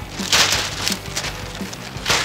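Fabric kite sail whipped hard through the air, giving two rushing whooshes of flapping cloth, about half a second in and again at the end, over light background music.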